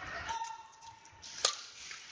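A badminton racket strikes a shuttlecock once, a single sharp crack about one and a half seconds in, over the echoing noise of a sports hall.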